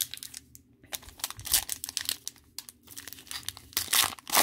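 Panini foil trading-card pack crinkling in the hands and being torn open, a dense run of sharp crackles that is loudest about a second and a half in and again near the end.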